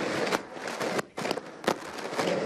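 Several sharp, irregular clicks close to the microphones in a crowded press scrum, over a low background of crowd noise.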